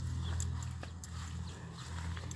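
Grass and leaves rustling, with a few scattered light clicks and snaps, as a hand pushes through garden foliage, over a steady low hum.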